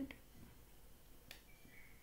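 Near silence with the faint sounds of a felt-tip marker writing on a whiteboard: a sharp tap a little past the middle and a short, faint high squeak just after it.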